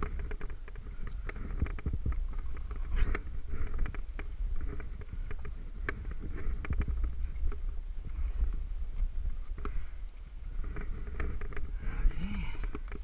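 A rock climber's movement up a crack: scattered scuffs and sharp clicks of hands and gear against the rock, over a steady low rumble on the microphone.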